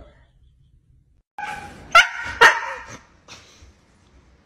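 A dog barking: a short run of pitched yelps about a second and a half in, with two loud barks about half a second apart.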